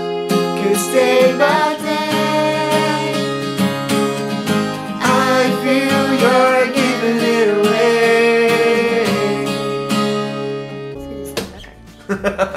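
A man and a young girl singing together, accompanied by a strummed acoustic guitar; the music fades out near the end.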